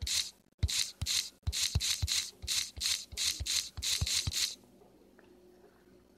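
A quick run of rubbing or brushing strokes, about three a second, each starting with a faint knock, that stops about four and a half seconds in.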